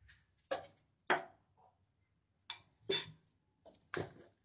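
A few short, scattered clicks and taps of kitchen utensils and containers being handled, about six in four seconds with quiet gaps between.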